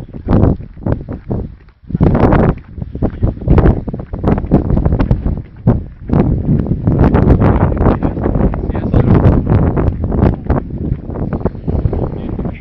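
Wind buffeting the microphone in loud, irregular gusts, dropping briefly about a second and a half in.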